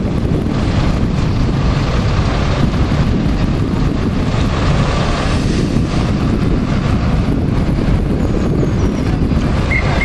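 Steady low rumble of city street traffic with wind buffeting the microphone. Near the end, a short run of about four high-pitched chirps.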